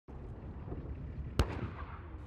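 A single sharp, distant gunshot report on a tank live-fire range, about one and a half seconds in, over a low steady rumble.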